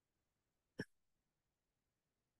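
Near silence broken by a single short click a little under a second in.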